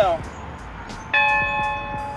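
A large yoke-mounted bell rung once about a second in, sounding several steady tones together that ring on and slowly fade.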